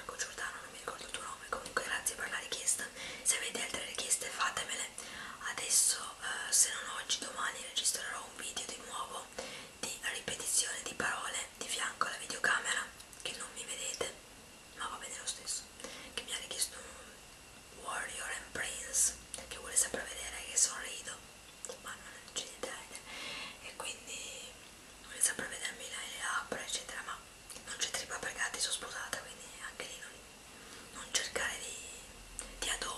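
A woman whispering close to the microphone, in short phrases broken by brief pauses.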